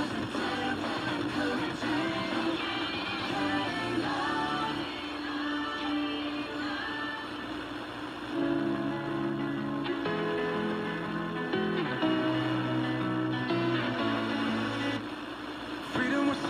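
An FM radio playing the instrumental opening of a contemporary Christian song on K-Love, sounding fuller from about eight seconds in when low sustained notes come in.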